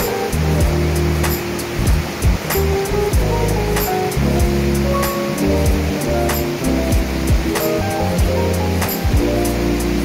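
Background music with sustained notes and a steady beat, over the steady rush of a fast mountain stream.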